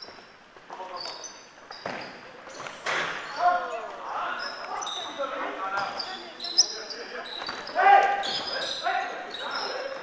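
Basketball game on an indoor court: the ball bouncing on the floor in sharp knocks, sneakers squeaking in many short high squeaks, and players shouting to each other, loudest near the middle and about eight seconds in.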